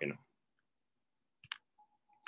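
A single short, sharp click, a computer mouse button pressed to advance a presentation slide, in an otherwise near-silent pause.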